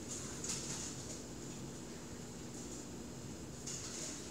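A fingertip swiping across a tablet's glass screen: a few soft, brief swishes over a faint steady hum.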